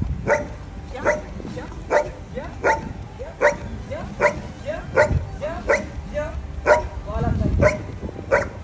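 A dog barking repeatedly in short, sharp barks, about one every 0.8 seconds, with a low rumble near the end.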